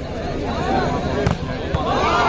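A volleyball struck hard, one sharp slap a little past a second in and a weaker knock about half a second later, among players' and spectators' shouts.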